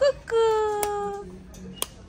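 A toddler's brief held vocal note, even in pitch and fading away after about a second. Two sharp clicks about a second apart come from the plastic toy being clicked in her hands.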